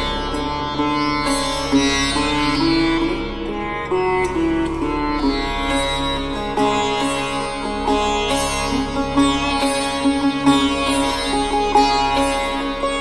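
Instrumental Indian-style meditation music: a slow plucked string melody over a steady low drone.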